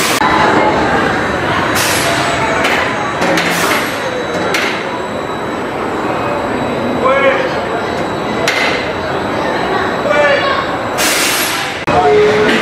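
Steel roller coaster train running on the track overhead: a steady rumble broken by sharp metallic clacks, with a few shouts from people.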